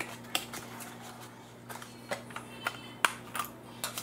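A cardboard box and its packaging being handled as a kitchen scale is unpacked, with scattered light clicks and taps.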